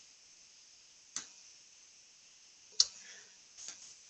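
Two short, sharp clicks about a second and a half apart, the second louder, with one or two softer clicks near the end, over a quiet background.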